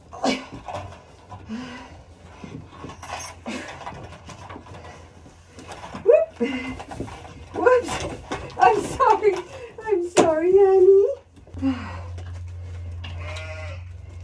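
Lambs bleating several times in the second half, one long quavering bleat among them, with knocks and rustling from the animals being handled before that.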